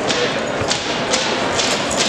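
Hall noise from a busy gymnasium, with sharp knocks or thuds about twice a second.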